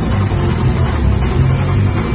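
Live gospel band playing praise-break music on drums, guitar and keyboards, loud and unbroken with a heavy bass.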